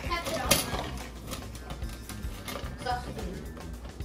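Ice cubes clinking and clattering in a metal bowl as a hand scoops through them: an irregular run of sharp clicks, one louder about half a second in, over background music.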